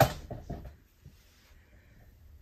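Interior door swinging on a spring hinge: a sharp click right at the start, then a few lighter clicks over the next half-second. The hinge's spring is not yet tensioned tightly enough to pull the door fully shut.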